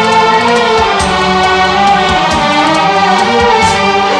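Orchestral Hindi film-song music with a chorus, playing steadily with regular percussion strikes and no solo lyrics.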